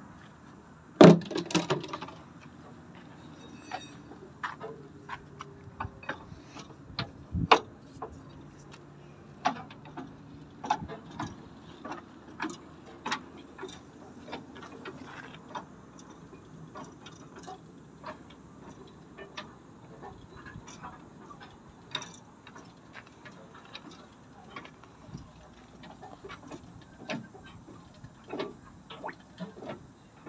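Scattered metallic clicks and knocks, with a louder clunk about a second in, from the tilted cab of a Mercedes-Benz Actros truck being worked back down toward its seat.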